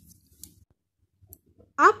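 Stainless-steel wire hand whisk faintly clicking and scraping against a bowl as it beats a thin cake batter, dying away about half a second in, with a lone faint click later. A woman's voice starts near the end.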